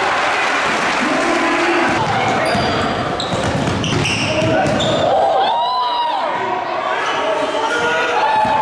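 A basketball being dribbled on a hardwood gym floor, the bounces echoing in the hall, with players and spectators calling out over it.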